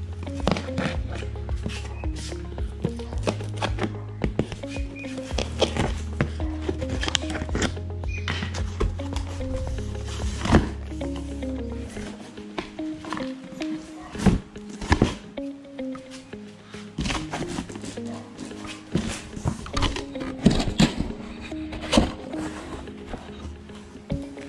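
Background music with a bass line and repeating notes; the bass drops out about halfway through.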